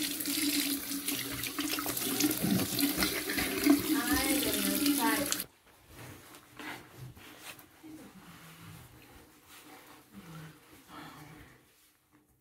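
Tap water running into a sink while hands splash it onto the face to rinse off a face mask; the water stops abruptly about five and a half seconds in. Faint rubbing of a cloth towel on the face follows.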